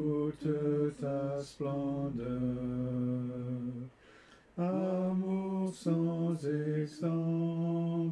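Unaccompanied singing of a French hymn: long held notes in phrases, with a short breath pause about four seconds in.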